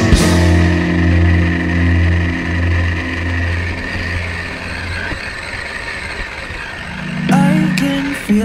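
Background rock music: a held low guitar chord fades away over the first five seconds, and a new phrase starts about seven seconds in.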